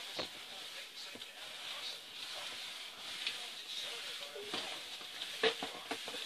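A cloth rag wiped across a hard table top, a soft rubbing hiss, with a few light knocks.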